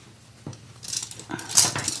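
A paper towel being picked up and handled: a click, then a few short rustling bursts.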